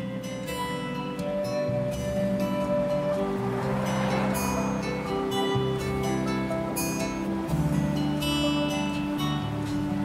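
Instrumental background music with strummed and plucked acoustic guitar and sustained notes.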